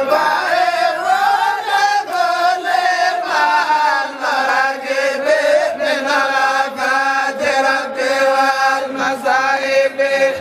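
Voices chanting Islamic zikr (dhikr) without instruments: a melodic, ornamented vocal line over one steadily held note.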